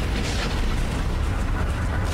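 Animated-show fight soundtrack playing: a steady low rumble under a wash of noise, with a brief hiss about a third of a second in.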